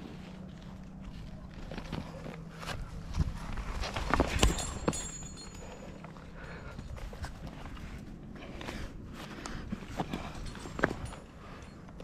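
Scattered scrapes, taps and sharp clicks of a rock climber moving on the wall and handling rope and climbing gear, the loudest knocks about four seconds in and again near the end.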